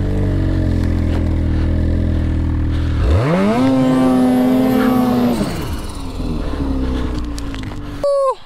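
Turbocharged Lynx snowmobile engine running at a low steady speed, then revved up hard about three seconds in, held high for about two seconds and let back down to a lower speed. The sled is stuck in deep snow.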